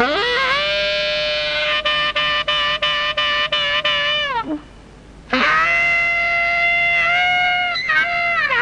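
Saxophone playing two long held notes, each scooping up into the pitch and bending down as it ends, with a short break between them about halfway through.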